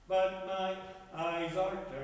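A man chanting liturgical verses on held, steady notes that step up and down. The first phrase begins just as the clip opens, and a second phrase follows after a short breath about a second in.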